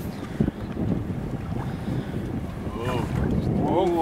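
Wind buffeting the microphone on a small fishing boat at sea, a dense low rumble throughout. Near the end a person gives two short exclamations.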